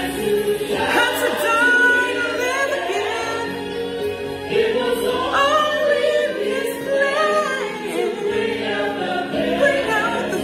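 A woman singing a gospel song over musical accompaniment, her sung notes bending and held.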